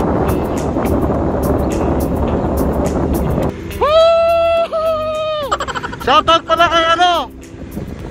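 Wind and road noise on the microphone of a moving motorcycle, with background music. About three and a half seconds in the noise cuts off and a voice holds one long note, then a run of shorter wavering notes.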